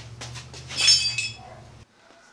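A thin sheet-steel strip clinking and ringing against the metal of a hand punch press as it is handled and taken out, loudest about a second in.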